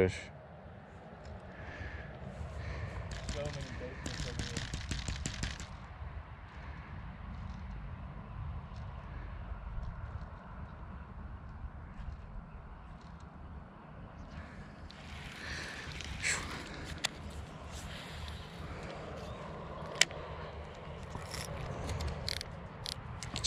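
Wind rumbling on the microphone, with bursts of light clicks from handling a baitcasting rod and reel: one cluster about three to five seconds in, another about fifteen to seventeen seconds in, and a single sharp click near the end.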